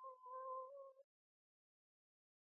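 Faint microphone feedback (Larsen effect) through the hall's PA: a steady whine with a fainter higher overtone that breaks briefly, then cuts off about a second in.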